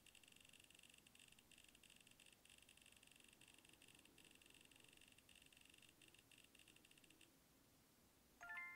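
Near silence with very faint rapid ticking from a phone's spinning-wheel randomizer app as the wheel cycles through choices. The ticking stops abruptly about seven seconds in, when the wheel comes to rest.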